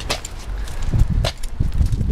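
Footsteps on sandy, gritty ground: a few irregular crunches and knocks over a low rumble.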